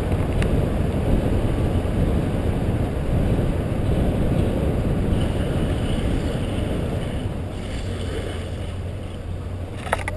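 Wind buffeting the microphone of a camera mounted on a moving car's hood, mixed with the car's road noise. It is a steady rumble that eases off over the last few seconds.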